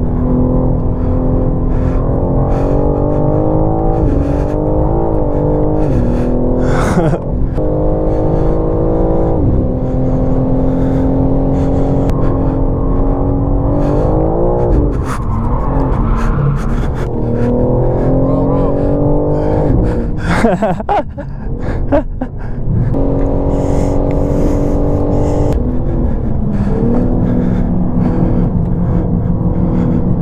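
BMW M4 twin-turbo inline-six heard from inside the cabin, running at part throttle on a tyre warm-up lap. The revs hold steady for stretches, then climb and drop back with gear changes several times.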